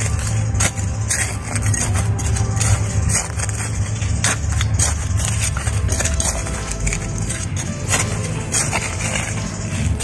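A small metal hand trowel scraping and crunching into dry soil in irregular strokes while a hole is dug, over background music and a steady low rumble.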